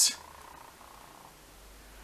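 Faint steady room noise with a low hum, after the tail of a spoken word at the very start.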